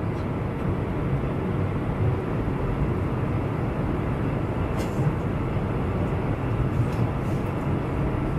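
Steady cabin noise of a jet airliner in cruise, heard from a window seat over the wing: an even, deep rush of engines and airflow with no change in level. A faint click about five seconds in.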